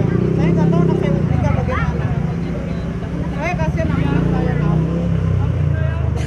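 A motor vehicle's engine running close by, a steady low drone, with people's voices talking over it.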